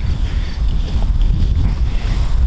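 Strong wind buffeting the microphone: a loud, unsteady low rumble.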